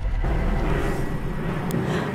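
Steady low rumble of outdoor background noise, like a vehicle engine running nearby, picked up by a live field microphone, with one small click near the end.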